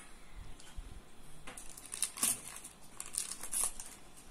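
Baking paper lining a metal cake tin crinkling and rustling as a hand grips its edge to lift the baked bread out. The crinkles come in a few short bursts over the second half.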